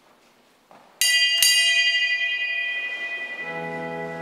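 A small high-pitched bell struck twice in quick succession, then ringing away; this is the sacristy bell that marks the start of Mass as the celebrant comes out. Half a second before the end, an organ begins sustained chords.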